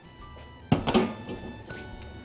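A single knock, a metal tart pan being set down on the counter, about two-thirds of a second in, over quiet background music.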